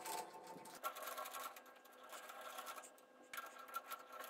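Metal lathe running while an insert turning tool cuts a metal bar: a scratchy, crackling cutting noise over a steady machine whine.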